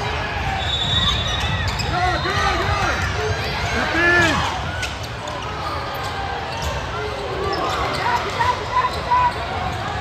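Basketball game in a large hall: sneakers squeaking in short chirps on the hardwood court, and a basketball bouncing in sharp knocks near the end as a player dribbles, over murmuring voices.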